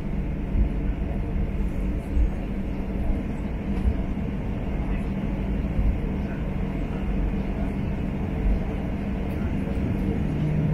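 Passenger aircraft cabin noise as the plane rolls along the runway: a steady engine drone over a low rumble, at an even level throughout.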